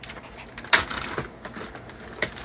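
Plastic zip-top bag being handled and pulled open, with one sharp crackle about three-quarters of a second in, followed by a few smaller clicks and rustles.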